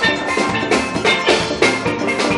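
Steel band playing: several steelpans struck in a quick, steady rhythm, each note ringing, with a drum kit keeping the beat underneath.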